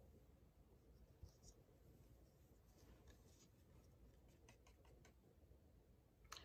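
Near silence, with a few faint, light taps and scrapes of plastic paint cups being set down and picked up on the work table.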